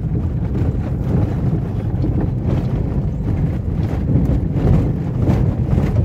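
Car driving along an unpaved dirt road, heard from inside the cabin: a steady low rumble of tyres on the dirt and the engine running.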